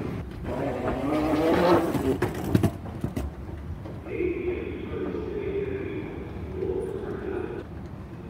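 Rolling noise and footsteps on a hard terminal floor, with a few sharp clicks, for the first few seconds. Then a steady escalator hum with a faint higher whine, which stops shortly before the end.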